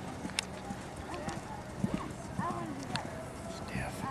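Hoofbeats of a horse cantering on arena sand, with people talking in the background and a few sharp clicks.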